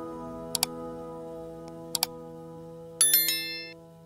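Subscribe-button animation sound effects over soft sustained music: two quick double mouse clicks, about a second and a half apart, then a bright notification-bell chime about three seconds in that rings out briefly.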